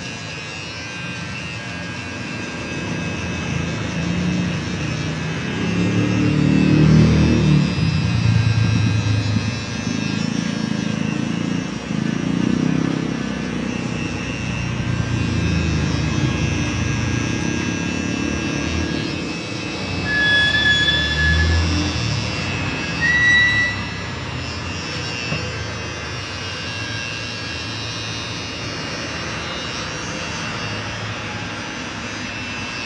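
Electric hair clippers buzzing through a fade cut, louder in stretches as they work the hair, over background music.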